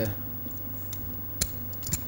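Poker chips clicking: two sharp clicks about half a second apart near the end, over a low steady hum.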